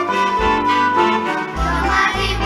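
A youth band playing an upbeat song live, with the bass line coming back in near the end.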